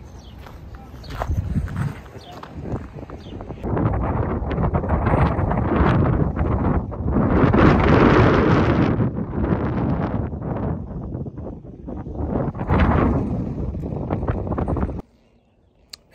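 Gusty wind blowing across the microphone, with heavy low rumble that swells and eases in waves and is loudest in the middle, then cuts off suddenly about a second before the end.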